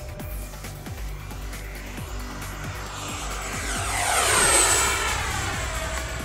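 Twin 64mm electric ducted fans of a Freewing F-14 Tomcat RC jet in a fly-by. The rushing whine swells to a peak about four and a half seconds in, and its high whistle drops slightly in pitch as the jet passes, over background music.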